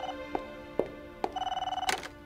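Desk telephone ringing with a warbling electronic trill in two bursts, the second starting a little over a second in. Short clicks fall between the rings, and a sharp click comes near the end as the handset is picked up.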